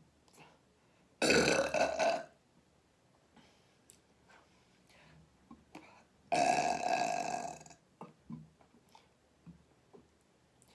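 A woman burping loudly twice: one burp of about a second, then a longer one of about a second and a half, some six seconds in.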